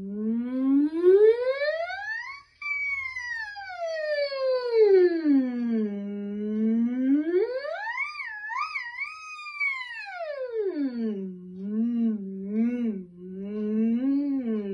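A woman's voice sounding a vocal siren on the 'ng' of 'sing', a hum-like tone. It slides smoothly up high and back down low, rises high again with a few quick wobbles at the top, then sinks low with small wobbles near the end.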